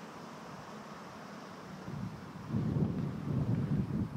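Wind buffeting the microphone: a steady low rush, then a louder, gusty low rumble from about two and a half seconds in.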